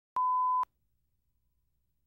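A single steady 1 kHz test-tone beep about half a second long, with a click where it starts and stops. It is the line-up reference tone that goes with colour bars at the head of a video tape. Near silence follows.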